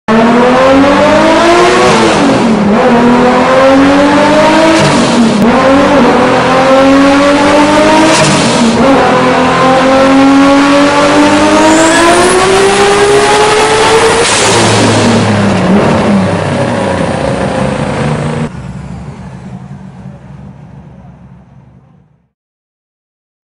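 A car engine accelerating hard through the gears, loud: the revs climb for a few seconds and drop back at each upshift, about four times. Near the end the pitch falls away, then the sound cuts off sharply and leaves a fading echo.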